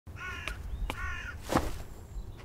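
A bird calling twice, each call about a third of a second long, with a few light clicks between and a louder sharp crackle about one and a half seconds in.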